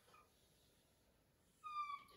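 Near silence, then near the end a short, high squeak that falls slightly in pitch.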